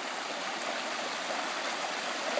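Shallow rocky stream flowing, a steady, even sound of running water.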